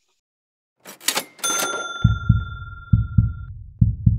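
Logo sting for an outro: a short whoosh, then a bright chime that rings for about two seconds, then a low double thump repeating like a heartbeat.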